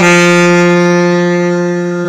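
Tenor saxophone holding one long, steady note, slowly fading as the breath runs out.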